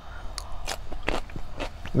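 Crisp raw pepper flesh of a Variegated Sugar Rush Peach x Poblano cross being chewed, a series of sharp crunches, roughly two a second.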